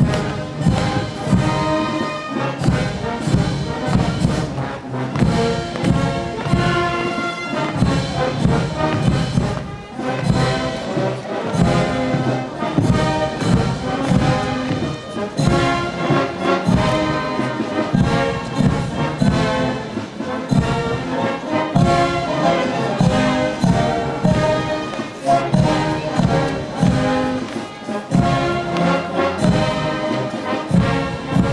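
Military brass band playing outdoors, brass with a steady drum beat, while the honour guard is reviewed.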